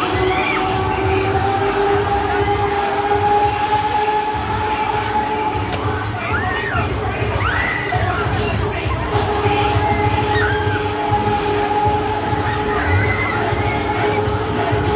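Riders on a Huss Break Dance fairground ride screaming and shouting, several rising-and-falling shrieks, over loud music with a steady bass beat and a long held note.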